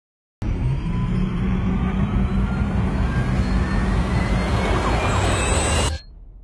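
Loud city traffic din with a heavy low rumble, under a single thin tone that rises slowly and steadily in pitch; the whole sound cuts off abruptly near the end.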